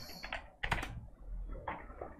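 Keystrokes on a computer keyboard, typing a word: a quick run of taps, a louder cluster a little after the middle, and another stroke near the end.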